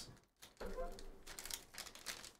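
Plastic card-pack wrapper crinkling as it is opened by hand, in a run of small crackles starting about half a second in.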